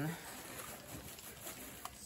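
Hands rummaging through shredded crinkle-cut kraft-paper packing fill in a cardboard box: a quiet, steady paper rustle with faint crackles.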